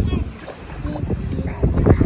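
Shallow sea water sloshing and wind rumbling on the microphone, with a child's voice briefly at the start and again near the end.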